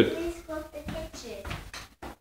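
A brief laugh, then a child's faint voice for a second or so.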